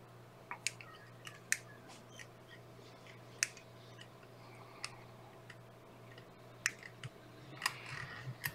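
Scattered light clicks and ticks from hand-tying a whip finish with a wire whip-finish tool and thread at a fly-tying vise, over a faint steady hum.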